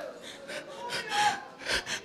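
A man breathing hard into a handheld microphone between shouted phrases: a few quick, audible breaths.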